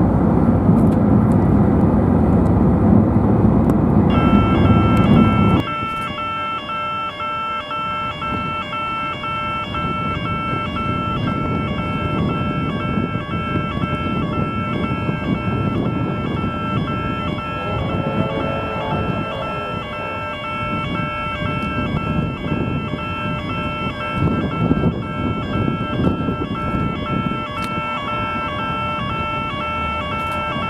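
A loud low rumble for about five seconds, cut off abruptly. Then railway level-crossing warning bells ring in a steady, evenly repeating pattern over a background of distant traffic.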